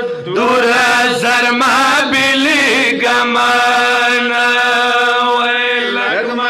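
Men's voices chanting a Shia Muharram lament (noha) together into a microphone, with wavering, ornamented lines and one long held note through the middle.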